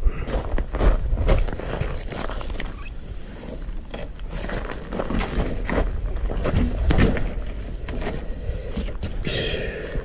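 Handling noise as an upside-down electric mountain bike is turned back onto its wheels on gravel: a run of irregular knocks, rattles and scuffs from the frame, wheels and gravel, with a brief hiss near the end.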